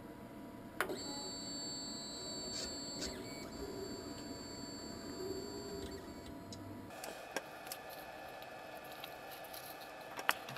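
Monoprice MP Select Mini 3D printer's stepper motors driving its axes, moving the build plate: a steady motor whine with high tones that starts after a click about a second in, and changes to a different steady pitch about seven seconds in.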